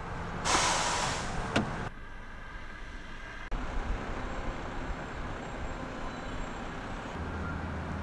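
Outdoor road traffic noise. A loud rushing hiss lasts about a second and a half near the start and cuts off sharply, then a steady lower traffic rumble carries on.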